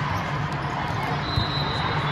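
A volleyball struck once, a single thump a little over halfway through, over the steady chatter of a large hall.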